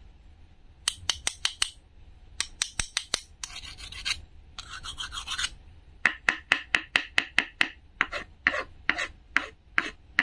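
A wooden toy knife scraped back and forth across a thin wooden board, wood rasping on wood. It comes in runs of quick strokes, with two longer scrapes about halfway through, then a steady sawing rhythm of about five strokes a second.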